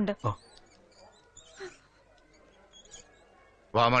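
Film dialogue: a voice finishes speaking just after the start, then a quiet pause with faint room tone and one brief soft noise about a second and a half in, and a man's voice begins again near the end.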